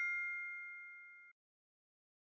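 Ringing tail of a two-note 'correct answer' chime sound effect, the signal that the right answer has been revealed, fading evenly and cutting out about a second and a half in.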